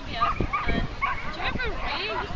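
Dog barking and yipping, a rapid string of short high barks, with voices in the background.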